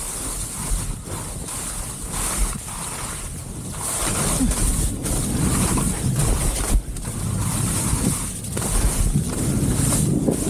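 Wind buffeting the camera microphone while skis hiss and scrape across soft spring slush, the hiss swelling and easing with each turn.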